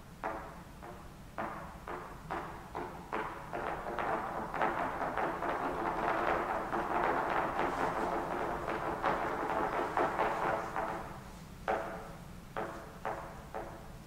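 A trio of trumpets playing a contemporary chamber piece: short, separate notes at first, building into overlapping, louder held notes from about four seconds in, then short detached notes again from about twelve seconds in.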